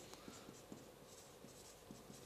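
Faint scratching of a felt-tip marker writing on a flip-chart board, in short irregular strokes.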